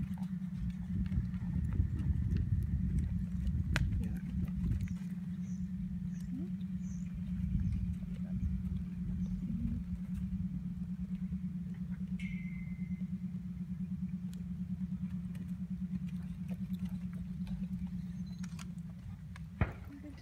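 A steady low engine hum with a fine, fast pulse runs until just before the end, over soft, irregular low thuds and rumbling, most of it in the first few seconds.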